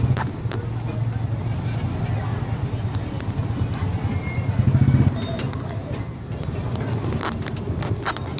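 Busy market-street noise heard from a slowly moving vehicle: a steady low rumble with voices of passers-by and scattered knocks and clicks. The sound swells briefly about five seconds in.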